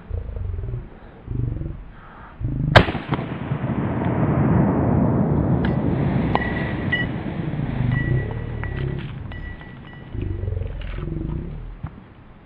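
A single .45 ACP shot from a 1918-pattern Colt 1911 pistol, about three seconds in. A long rumble follows for several seconds, with a few faint metallic clinks.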